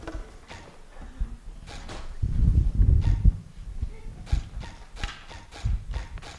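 Footsteps and scattered knocks and thuds of people moving about a stage and setting up, with a burst of heavier low thuds about two to three seconds in.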